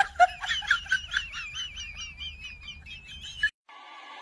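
High-pitched, cackling laughter: a fast run of giggles, about three or four a second, that cuts off suddenly near the end.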